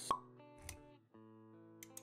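Intro-animation sound effects over soft background music: a sharp pop just after the start, a short low thud a little later, then a held chord with a few quick clicks near the end.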